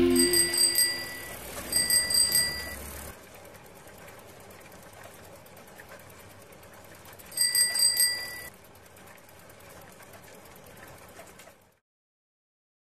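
A bicycle bell rings three times, each a quick fluttering ring of about a second, over faint street ambience while the last notes of the song fade out at the start. Everything cuts off to silence near the end.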